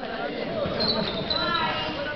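Basketball bouncing on an indoor court during play, with a couple of short high squeaks about a second in, over the voices of players and spectators.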